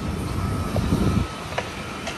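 Low rumble of street traffic that drops away suddenly about a second in, leaving a quieter steady hum of the street.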